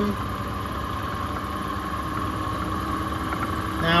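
Distributor test machine running steadily, spinning an HEI distributor held at about 2000 engine rpm, a steady hum with a constant higher whine.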